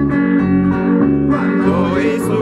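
Live worship music: acoustic guitar and electric bass playing a steady accompaniment, with a singing voice coming in about halfway through.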